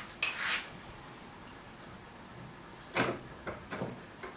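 Metal hand tools and hardware clinking on a workbench: a short rattling clatter just after the start, a sharp clink about three seconds in, then a few small clicks.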